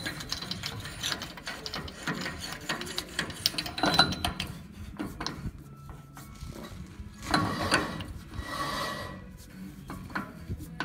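Metal clicks and scraping as a large socket is turned by hand on a trailer axle's spindle nut. Louder clinks come about four seconds in and again around seven and a half seconds.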